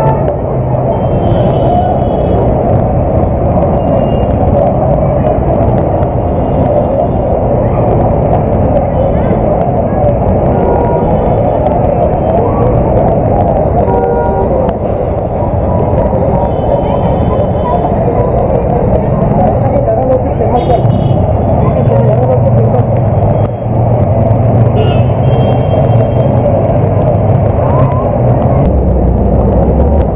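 Heavy rain and traffic on a waterlogged street: a loud, steady wash of noise with vehicles moving through the water, and brief faint higher tones now and then.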